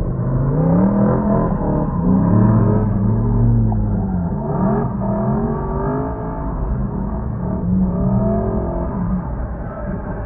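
A drifting car's engine revving up and dropping back again and again, the pitch rising and falling several times in a row.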